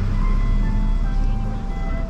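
Steady low rumble of a car cabin on the move, under a simple tune of plain single-pitch notes stepping from one pitch to the next.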